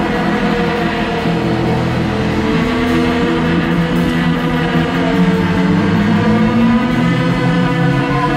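Live rock band playing loudly and continuously: electric guitars, bass guitar and drum kit, with long held guitar notes.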